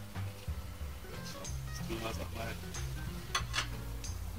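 Background music, with a knife cutting burgers on a wooden board, and two sharp clicks near the end.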